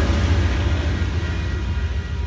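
Low rumble of an Amtrak passenger train moving away, fading gradually.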